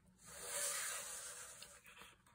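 A sheet of textured linen cardstock sliding and rubbing across the scoring board as it is moved and turned, a soft papery swish that swells in the first half second and fades away over about a second and a half.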